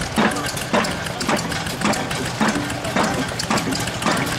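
Burrell steam traction engine driving a belt-driven jaw rock crusher, the machinery working with a steady, regular beat about twice a second.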